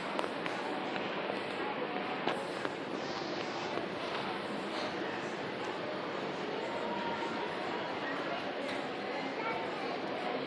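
Steady department-store ambience of indistinct background voices and a running escalator during a ride down a 2002 Mitsubishi escalator, with a few faint clicks in the first five seconds.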